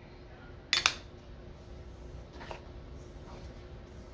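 A single sharp clink of a kitchen utensil against the mixing bowl about a second in, as baking powder is added, followed by faint soft handling sounds.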